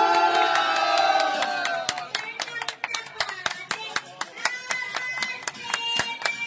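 A crowd clapping in a steady rhythm, several claps a second. Many voices hold a long chant together over the first two seconds, then fainter voices carry on under the claps.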